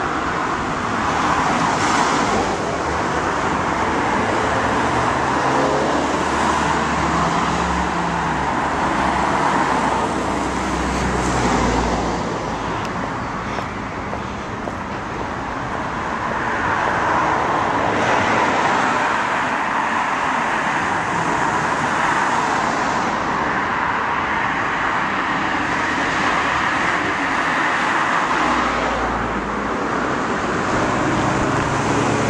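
Road traffic going by on a busy road: a steady noise of tyres and engines that swells and fades as vehicles pass.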